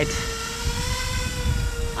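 Z-2 RC bicopter's two electric motors and propellers in flight, a steady whine that wavers slightly in pitch as it holds its hover. Wind rumbles on the microphone underneath.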